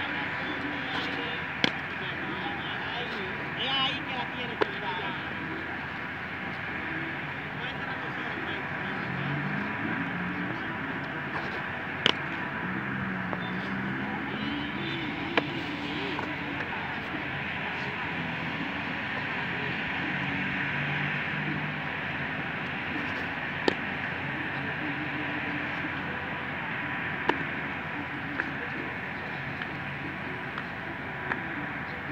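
Baseball smacking into a leather glove during a game of catch: six sharp pops a few seconds apart, over a steady outdoor hiss and faint distant voices.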